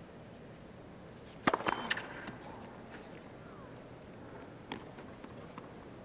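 Tennis ball impacts on racquet and hard court: three sharp pops in quick succession about a second and a half in, then a few fainter pops later, over low crowd noise.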